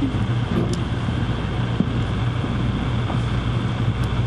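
Steady low hum and background noise of a room heard through podium microphones, with a faint click a little under two seconds in.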